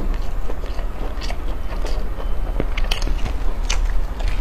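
Close-miked chewing of stewed pork knuckle, with irregular wet mouth clicks and crackles, while the meat and skin are pulled apart by gloved hands.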